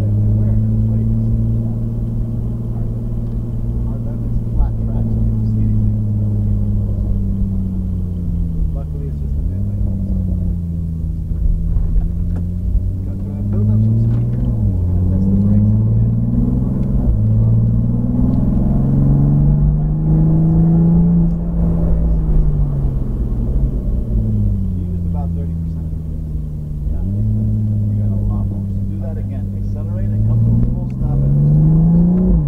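Toyota Supra A90's turbocharged 3.0-litre straight-six heard from inside the cabin on a track lap. Its pitch climbs and falls as the driver accelerates and brakes, with sudden upward jumps about 9 and 27 seconds in; the second comes as speed drops, typical of a downshift.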